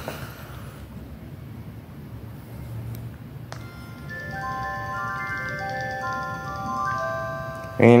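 Samsung SCH-X969 mobile phone playing its power-on melody through its small speaker: a short chime-like tune of overlapping bell-like notes at several pitches. It starts about three and a half seconds in and lasts about four seconds.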